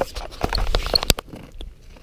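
Footsteps on lake ice: a run of quick, uneven steps and knocks in the first second and a half, then quieter.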